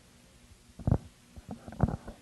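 Handheld microphone handling noise: a few dull thumps, the loudest about a second in and near the end, as the microphone is set down and passed to the next speaker.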